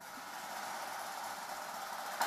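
Snare drum roll, starting suddenly, holding steady for about two and a half seconds and fading out just before the winner's name is announced.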